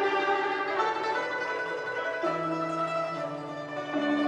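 Chinese traditional string ensemble of yangqin (hammered dulcimer) and guzheng (plucked zither) playing a melody, with long held notes that change pitch every half second to a second.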